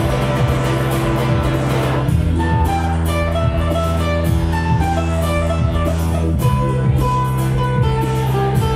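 Instrumental live-looped rock-funk groove: acoustic guitar over a looped bass line and a steady percussion beat. The bass line changes about two seconds in, and a line of short picked melody notes enters just after.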